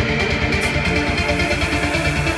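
Loud electronic dance music from a DJ set playing over loudspeakers, with a steady, evenly repeating beat.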